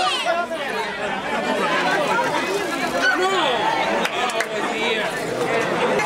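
A crowd of spectators talking and calling out all at once, many voices overlapping with no single voice standing out.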